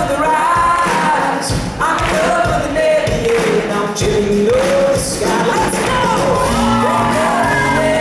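Live band playing an acoustic pop-rock song, with acoustic guitars, drums and bass under a sung melody, heard from within the crowd in a large hall.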